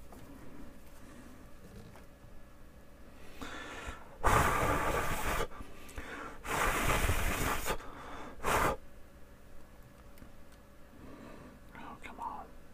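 A person blowing out hard three times, two long breaths of about a second each and then a short puff. The breaths are blown onto hot-melt glue to cool it so it sets.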